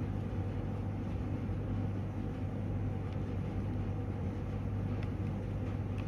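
Steady low background hum and rumble, with no distinct clicks or beeps.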